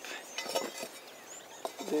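Faint outdoor background with high, short bird chirps and a few soft knocks, then one spoken word at the end.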